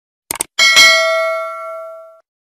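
Subscribe-button sound effect: a quick click, then a bright notification-bell ding that rings on and fades away over about a second and a half.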